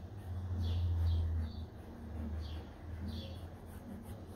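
Cotton swab rubbing over the varnished canvas of a 300-year-old oil painting in short repeated strokes, a few each second, as it lifts the old varnish. A low rumble of handling noise swells about half a second in and fades after about a second.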